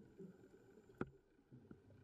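Near silence underwater, with one sharp click about a second in.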